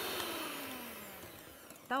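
Electric hand mixer beating cake batter in a glass bowl, then switched off: the motor winds down with a falling whine and fades away over about a second and a half.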